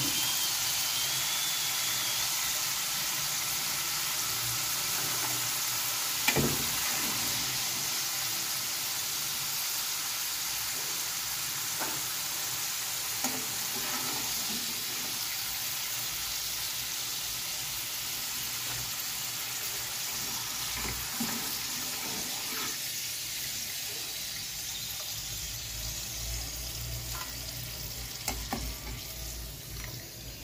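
Potato fries deep-frying in hot oil, a steady sizzle, with a few short clinks of a metal slotted spoon against the pan as the fries are lifted out. The sizzle eases somewhat in the last several seconds.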